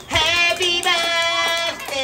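A child's voice singing a song with music, held notes wavering in pitch.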